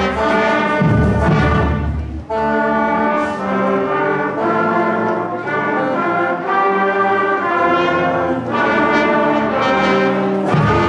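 School concert band playing, with trumpets and trombones holding sustained chords over low drum beats. The band breaks off briefly about two seconds in, then carries on.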